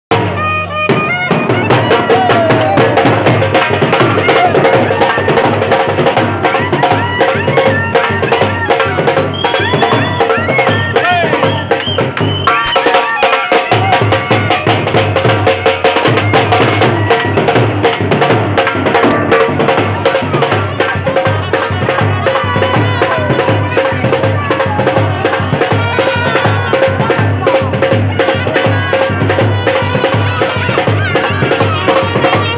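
Street band playing: a trumpet holding and bending notes over a fast, steady beat on large stick-struck drums, with crowd voices mixed in. The low drum beat drops out briefly about halfway through, then comes back.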